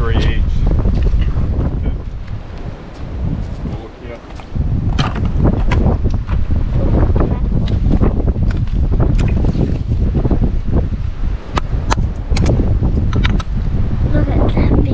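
Wind buffeting the microphone, with scattered sharp clicks and knocks of oyster shells being handled, coming thick from about a third of the way in.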